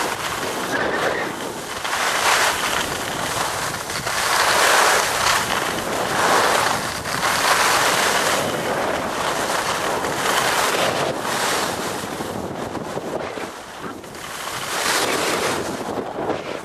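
Skis hissing and scraping over snow through a run of turns, the rush swelling and fading every second or two, with wind buffeting the microphone.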